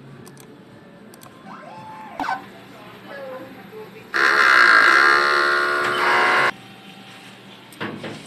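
DTF printer running a head-cleaning cycle: a motor whine for about two and a half seconds, starting and stopping abruptly about four seconds in, after a few faint clicks and a short tone.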